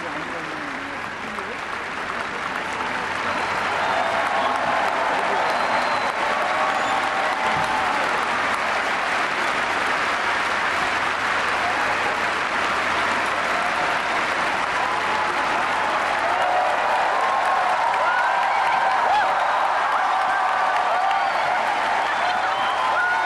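Large audience applauding steadily, swelling about four seconds in, with voices calling out and cheering over the clapping.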